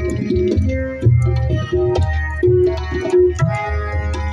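Harmonium playing a melody of held reed notes, accompanied by tabla: sharp strokes on the treble drum and deep, booming strokes on the bass drum.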